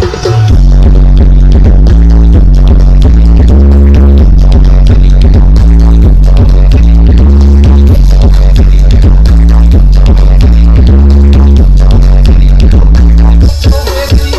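Bass-heavy music blasting from the Balada Dewa Audio stacked speaker rig, a 'sound horeg' carnival sound system. It is so loud that it overloads the recording, and the level stays flat at the top from about half a second in until a few dips near the end.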